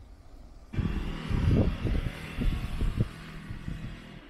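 Wind buffeting the microphone in irregular bursts of low rumble, starting suddenly about a second in and easing near the end, over street traffic noise.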